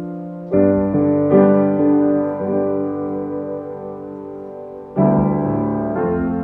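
Solo piano playing a slow piece: chords struck just after the start and again about a second later, left to ring and slowly fade, then a fresh chord near the end.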